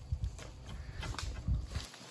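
Irregular knocks and scrapes of a long-pole oil-palm harvesting sickle working against the frond bases and stalk of a large fruit bunch that has not yet come free, over low rumbling noise, with a louder thump about one and a half seconds in.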